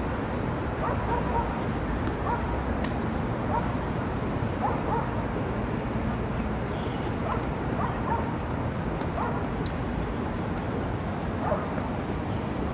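A small dog yapping in short, repeated barks at irregular intervals, over a steady low rumble of traffic.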